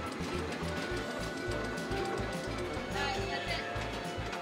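Arcade game-machine music with a steady bass beat and electronic tones, mixed with the din of neighbouring machines.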